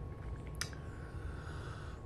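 Quiet room tone: a faint low hum, with one soft click a little over half a second in.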